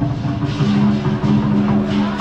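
Music with held low notes that switch between two pitches every half second or so, over dense street noise.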